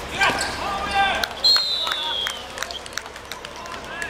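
Players shouting on a hard outdoor court as a goal goes in. A high whistle sounds about a second and a half in, falling slightly in pitch over nearly a second, with sharp thuds of the ball and feet on the court throughout.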